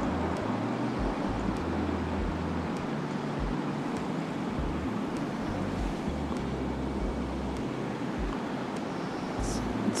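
Steady outdoor wind noise on the microphone: an even rushing hiss with irregular low rumbling that comes and goes.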